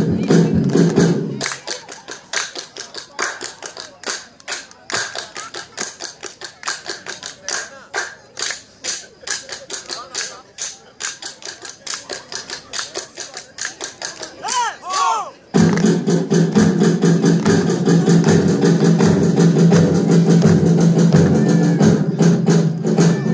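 Bulgarian folk dance music with a steady drone cuts off about a second and a half in. A long stretch of irregular sharp claps and knocks with some voices follows. The music with its drone and a regular beat starts again a little after the middle.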